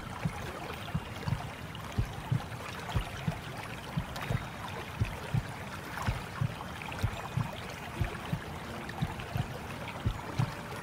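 Recorded heartbeat in a lub-dub rhythm, about one beat a second, over a steady whooshing hiss, a womb-sound track for settling a baby. Soft held music notes come in about eight seconds in.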